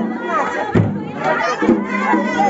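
A crowd of voices shouting and singing together over loud, lively music, with a few sharp drumbeats.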